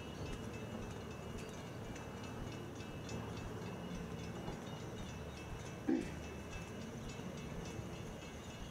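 Steady outdoor background noise with faint high tones and light, irregular ticks, and one short low thump about six seconds in.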